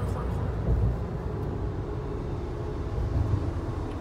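Steady low road and engine rumble inside the cabin of a Mitsubishi kei car cruising at expressway speed.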